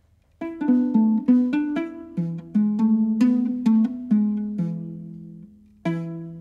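Nyatiti, the Luo lyre, plucked in a run of single notes that each ring and fade, starting about half a second in: the opening of a song. The notes come two or three a second at first, then ring longer, and after a short gap a fresh note sounds near the end.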